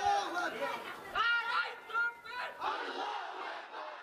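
A large crowd of men shouting together, several loud overlapping surges of voices that fade away near the end.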